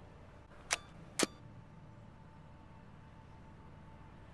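Two sharp clicks about half a second apart over a faint steady hum.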